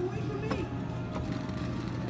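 Arcade ambience: game-machine music and a steady hum with faint voices, and one sharp click about half a second in.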